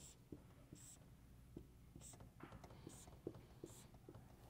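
Faint dry ticks and short squeaks of a felt-tip marker on a whiteboard as a dashed line is drawn stroke by stroke.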